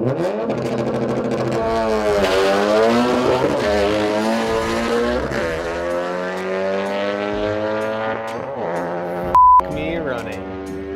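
Turbocharged Honda Civic Si four-cylinder accelerating hard down a drag strip: the engine pitch climbs and drops back at each of several upshifts, and the sound fades slowly as the car pulls away. Near the end a short, loud beep tone cuts in briefly.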